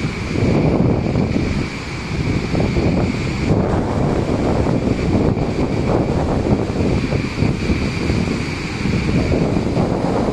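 A waterfall on a river in flood, its floodwater pouring over the falls in a loud, unbroken rush, with wind buffeting the microphone.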